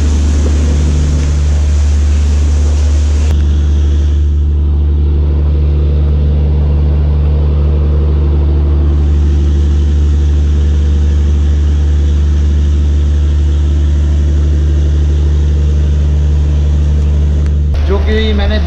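Steady, deep hum of an idling diesel train engine, running unchanged throughout.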